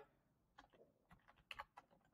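Faint computer keyboard typing: a short run of quick key clicks, most of them in the second half, as a number is keyed in.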